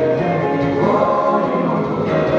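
A song playing, with voices singing held notes over the music.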